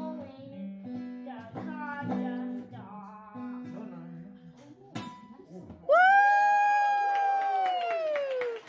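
Acoustic guitar strummed while a group sings along; the singing and playing trail off about four seconds in. Near the end a single voice holds one long, loud note that rises and then slowly falls.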